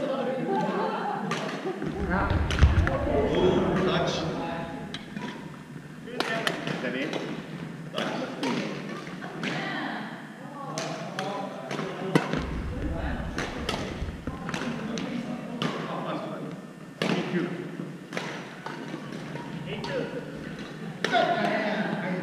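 Badminton rally in a large gym: a string of short, sharp clicks of rackets striking the shuttlecock, some from neighbouring courts, over a background of voices. Two spells of low thuds, about two seconds in and again around twelve seconds, from players' feet on the wooden court floor.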